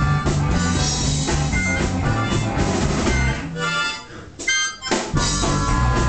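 Blues harmonica played into a vocal microphone over a live band of guitar and drum kit. A bit past halfway the band stops for about a second and a half, leaving a few harmonica notes alone, then comes crashing back in.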